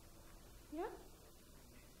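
Quiet room tone in a lecture hall, broken about a second in by one short spoken "Yeah?" from a woman, rising in pitch as a question.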